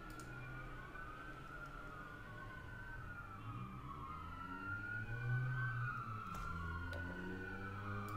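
Several police sirens wailing at once, their slow rising and falling tones overlapping, over a low rumble.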